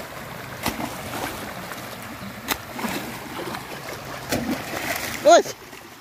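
Muddy floodwater running and splashing across a dirt track, while a hoe strikes the mud and gravel three times, about two seconds apart. Near the end a man's voice gives a short loud call.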